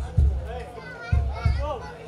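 Deep drum strikes from a jaranan gamelan ensemble, coming in two close pairs, one at the start and one a little past the middle, with children's voices calling out over them.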